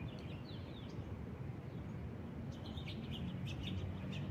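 Birds chirping over a low, steady outdoor rumble: a few short falling chirps at the start, then a run of quick chirps over the last second and a half.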